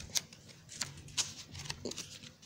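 Oracle cards being handled: a few soft, scattered paper clicks and light rustles.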